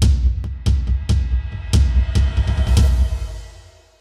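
Drum-heavy outro music sting: a string of heavy bass-drum and cymbal hits over held tones, fading out near the end.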